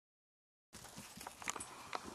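Silence, then about two-thirds of a second in, faint background noise starts with a few light, sharp taps, the loudest near the middle.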